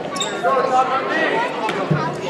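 Voices calling out across a gym during a basketball game, with a basketball bouncing once on the wooden court near the end.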